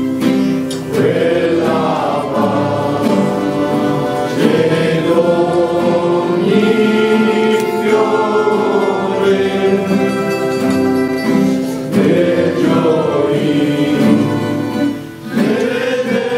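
Voices singing a slow song together, holding long notes, over plucked acoustic guitar accompaniment.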